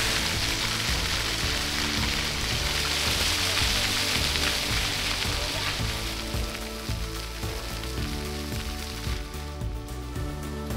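Fountain jets splashing, a steady hiss of falling water that fades away about six seconds in, under background music with sustained notes.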